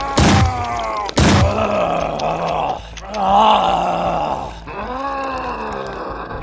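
Cartoon sound effects: two sharp hits about a second apart, then a creature's long, wavering groans and grunts.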